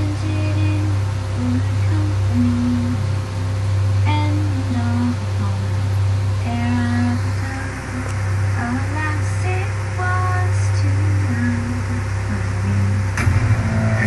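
Trailer soundtrack music: a slow melody of single held notes over a steady low drone, played back from a TV.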